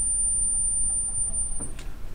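The highest note of a Kuhn pipe organ: one thin, very high steady tone, held about a second and a half and then stopping.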